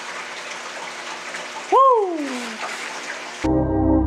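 Steady rushing of running water from bait-shop minnow tanks. About two seconds in, a short tone slides down in pitch. Near the end the water sound cuts off and ambient music begins.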